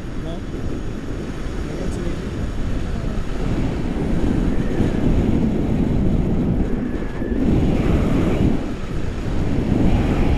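Airflow buffeting the camera microphone during a tandem paraglider flight: a loud, steady, low rumble of wind noise that grows somewhat louder a few seconds in.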